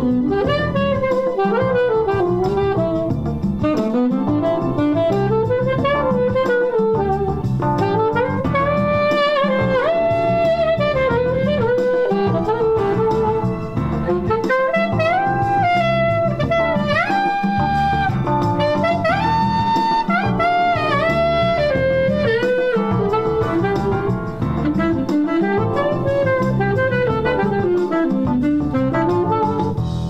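Alto saxophone improvising flowing jazz lines, rising and falling phrases, over a backing track that vamps on an E7sus4 to Dm7 chord change.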